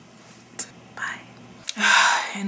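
A woman whispering under her breath in a few short breathy bursts, then her voice coming back loud and breathy near the end.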